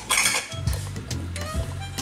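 Kitchen clatter and clinks as a can of drained kidney beans is tipped into a ceramic slow cooker crock, with a short rush of sound in the first half-second, over background music.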